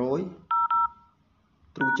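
Phone dialer keypad tones as the USSD code *400# is keyed in: two short dual-tone beeps back to back for the zeros about half a second in, then one more for the hash key near the end.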